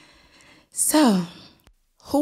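A woman's breathy sigh about a second in: a hissing onset, then a voiced tone falling in pitch. A sharp click follows just before the end.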